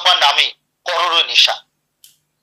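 A man speaking Bengali in two short phrases separated by brief pauses.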